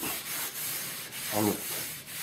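Wire wool rubbed by hand along the edge of an old wooden frame, a steady scratchy rubbing as it takes the worn edges off the old finish.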